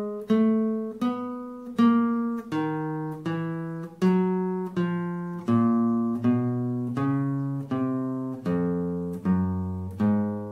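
Nylon-string classical guitar playing the 1-2-4-3 finger exercise, one plucked note at a time. The notes are slow and even, about three every two seconds, each ringing on until the next. The line works its way down in pitch overall toward the bass strings.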